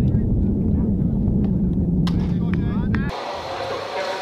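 A steady low rumble outdoors, with a few sharp clicks about two seconds in. About three seconds in it cuts suddenly to a quieter indoor room sound.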